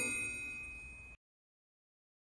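A single bell-like ding rings out and fades away over about a second, then the sound cuts to dead silence.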